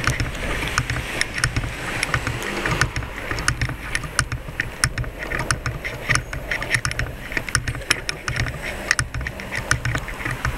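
City street ambience picked up by a handheld camera's built-in microphone while walking. There is a steady low rumble and many small, irregular clicks of camera handling noise.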